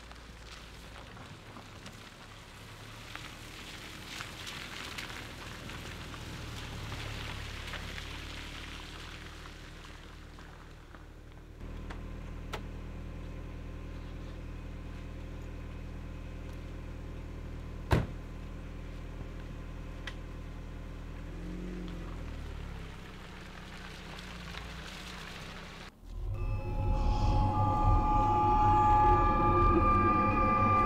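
A car drives up over wet ground, its tyres and engine swelling and fading, then the Volkswagen's engine idles with a steady low hum. A single sharp door slam comes about 18 seconds in, and about 26 seconds in eerie music with sustained tones takes over.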